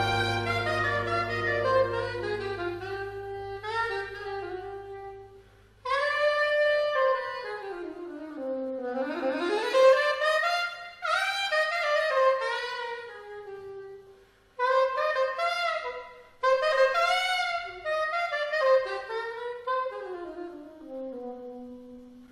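Soprano saxophone playing unaccompanied jazz phrases, one melodic line with short breaks between phrases, after the big band's held chord fades away in the first few seconds.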